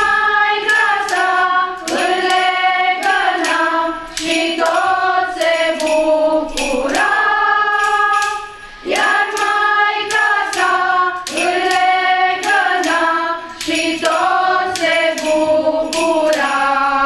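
A women's choir singing together, with a steady shaken-percussion beat, like a tambourine, running under the voices. There is a brief pause between phrases just before nine seconds in.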